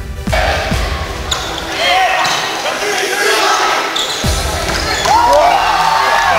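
Live sound of a volleyball rally in a gym: the ball being struck, short squeals from shoes on the hardwood floor, and players and spectators shouting. A heavy thump comes about four seconds in.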